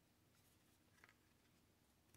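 Near silence, with faint soft rustles of trading cards being shuffled by hand, two of them a little clearer about a third of a second and a second in.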